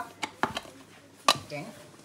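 Lid being pressed onto a small food container and the container knocking on the counter and pan: three sharp clicks.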